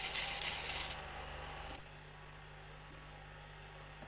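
Steady hiss for nearly two seconds that then cuts off, leaving a faint low hum: background noise of an old tape recording between sound cues.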